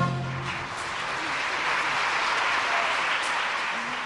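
A ballet orchestra ends its closing chord about half a second in, and a theatre audience's applause takes over and continues steadily.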